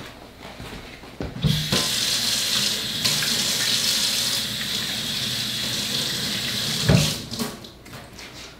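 Kitchen faucet running into a sink: the water is turned on about one and a half seconds in, runs steadily, and is shut off about seven seconds in, with a knock at the start and end.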